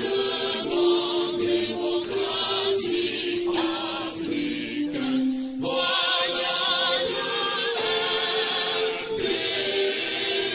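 Choir singing long held notes with vibrato as outro music; the melody steps down over the first five seconds, then jumps back up.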